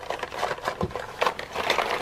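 Small cardboard skincare boxes, plastic tubes and foil sample sachets being gathered and shuffled by hand: a quick, irregular run of light taps, clicks and crinkling.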